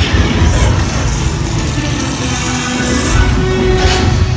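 Loud ride soundtrack of dramatic music over deep rumbling battle effects, with a sharp burst at the start and another near the end and a hissing rush in between.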